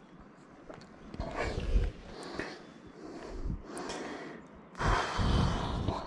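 A climber's breathing close to the microphone, in several short noisy breaths and rustles, the strongest about five seconds in, as he moves his hands over granite rock on a slab.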